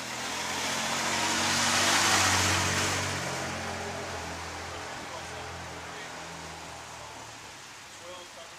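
A car driving past on the street: engine and tyre noise swell to a peak about two seconds in, then fade slowly as it moves away.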